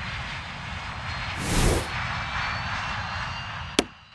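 Jet airliner taking off, its engine noise swelling to a peak about a second and a half in, followed near the end by one sharp knock of a rubber stamp coming down on a passport.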